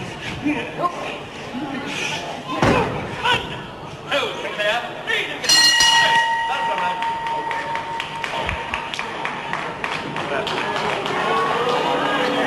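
Crowd voices calling out in a large hall, with a heavy thud about three seconds in. About halfway through, an end-of-round bell rings one steady, fading tone, marking the end of round one.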